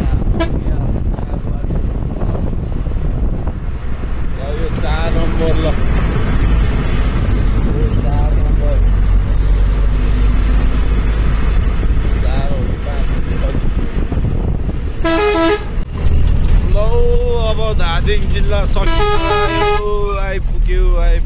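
A vehicle's engine and road rumble heard from inside the cabin, running steadily in slow traffic. A vehicle horn sounds about fifteen seconds in and again, with a warbling tone, near the end.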